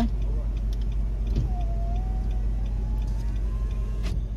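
Steady low rumble inside a stationary car with its engine running. From about a second and a half in, a faint thin whine rises slowly in pitch.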